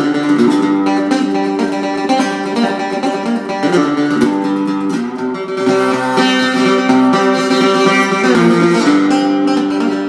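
A custom cigar box guitar with a hand-wound pickup being played, plucked and strummed notes ringing on in a continuous melodic passage, with a note sliding down in pitch near the end.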